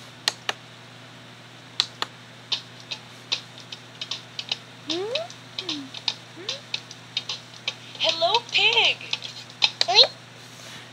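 Sharp clicks at irregular intervals, like keys being pressed, mixed with short squeaky sounds that slide up and down in pitch, from a children's puppet video playing on a computer.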